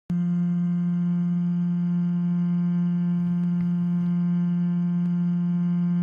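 A sampled vocal tone held as one sustained note in Ableton's Sampler: a single steady low pitch with a stack of overtones, looping in sustain mode with its loop start and end set at zero crossings to reduce clicking at the loop point. A few faint clicks come through in the second half.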